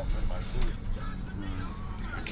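Interior noise of a moving car: a steady low engine and road rumble, with faint voices over it.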